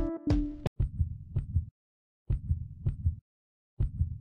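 Music with a beat cuts off under a second in. It is followed by three low, heartbeat-like pulses about a second and a half apart, each with two sharp ticks and silence between them, like a trailer-style heartbeat sound effect.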